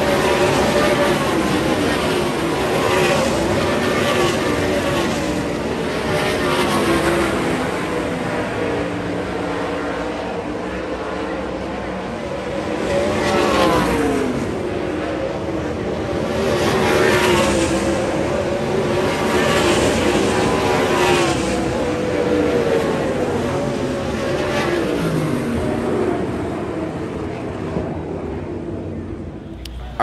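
A field of 410 sprint cars racing on a dirt oval, their 410-cubic-inch methanol V8 engines at high revs. The engine notes swell and fall in pitch as cars sweep past, loudest a little before and after the middle.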